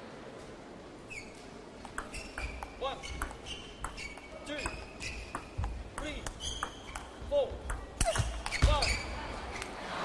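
Table tennis ball struck back and forth in a fast rally, a quick run of sharp clicks from paddles and table, with players' shoes squeaking on the court floor. It gets louder near the end as the point finishes.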